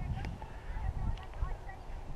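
A few faint, short honking bird calls over an uneven low rumble of wind and handling on the drone camera's microphone.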